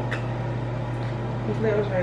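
A steady low hum runs throughout, with a few faint clicks. A woman's voice begins near the end.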